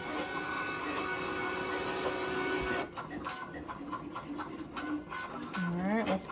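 Automatic mug press motor running steadily for about three seconds as the press releases at the end of its pressing cycle, then stopping. Scattered clicks and rattles follow.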